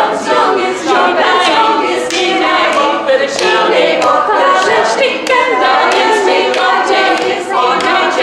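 A women's choir singing together without instruments, several voices overlapping in a continuous line.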